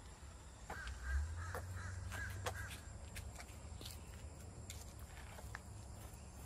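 Faint outdoor ambience: a bird calling a quick series of short notes in the first half, over a low rumble and a few small clicks.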